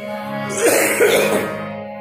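Harmoniums holding a steady note. About half a second in, a person gives a short, harsh throat-clearing cough in two bursts over it.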